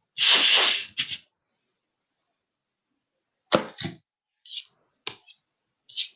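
A person sneezing: a loud hissy burst about half a second long with a short sniff-like burst right after. In the second half, about half a dozen short sharp clicks, typical of a computer mouse.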